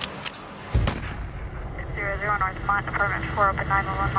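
A single loud rifle shot, a sudden boom about three-quarters of a second in, followed by a low rumbling tail.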